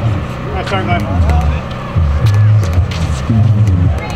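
Outdoor court ambience: indistinct voices of people courtside over a heavy, uneven low rumble, with a few faint sharp clicks.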